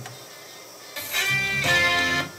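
Music comes in about a second in after a brief quiet gap: plucked guitar chords, one held chord moving to another.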